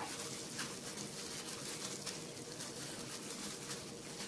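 Faint rustling of plastic-gloved hands rubbing and smoothing a set plaster cast, over a faint steady hum.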